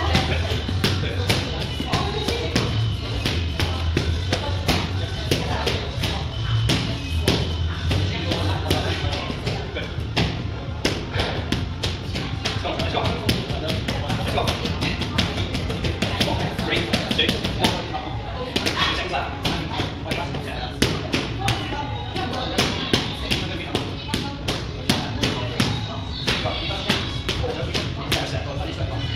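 Boxing gloves striking focus pads in padwork: a run of quick, irregular smacks. Music with a steady beat plays underneath.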